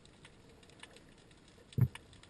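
Underwater ambience recorded in the camera housing: a faint, scattered crackle of tiny clicks, with a short low thump near the end.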